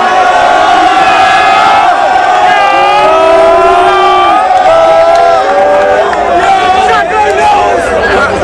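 A group of football players chanting and shouting together in celebration, several voices holding long drawn-out notes at once.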